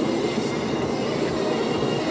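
Steady low rumble of a car's engine and road noise heard inside the cabin.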